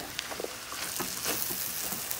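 Beans and calabresa sausage sizzling as they fry in a metal pan while being stirred, with a few light clicks from the spoon against the pan.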